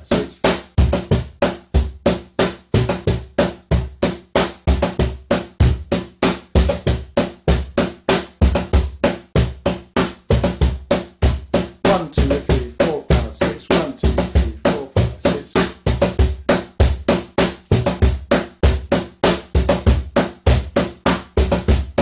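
J. Leiva cajon played with bare hands in a steady six-count Marinera rhythm, about four to five strokes a second without a break. Deep bass strokes from the middle of the front plate mix with higher tones struck near its top edge, with a tone at the top on each count one.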